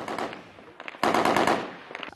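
Bursts of automatic gunfire: a few scattered shots a little before a second in, then a dense rapid volley lasting under a second.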